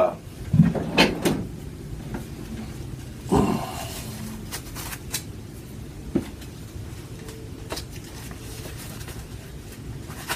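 Work gloves being pulled on and fitted: handling and rustling of the gloves with a few light knocks and clicks against the bench.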